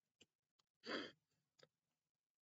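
A man's single sigh, one short breath out about a second in, with a few faint clicks before and after.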